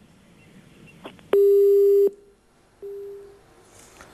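Telephone busy tone on a dropped phone-in line: one steady low beep lasting about three-quarters of a second, then after a pause of about the same length a second, much fainter beep at the same pitch. It is the sign that the call has been cut off.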